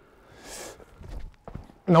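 A basketball's faint thud a little past the middle, then a few light knocks as it bounces on the court far off; the long shot from the stands has fallen short.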